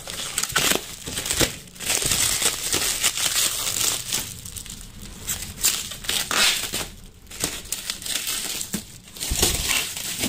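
Clear plastic stretch-wrap film on a copier crinkling and crackling as a hand presses and handles it, in uneven spells.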